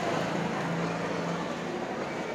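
Steady background noise with a low, even hum.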